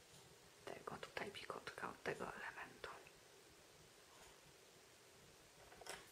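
A woman whispering under her breath for about two seconds, starting about a second in, then near silence.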